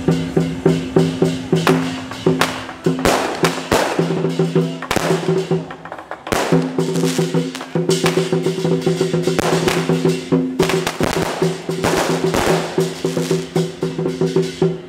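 Lion dance percussion playing a fast, driving rhythm on drum, gong and cymbals. Firecrackers crackle over it in several loud bursts.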